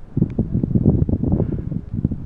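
Wind buffeting the microphone, giving a loud, irregular low rumble in gusts.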